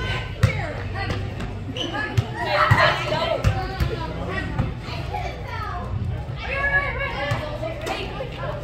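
Children's voices shouting and calling out in a large echoing indoor arena, loudest in a burst of shouting a little before the middle, with several sharp thuds of a soccer ball being kicked.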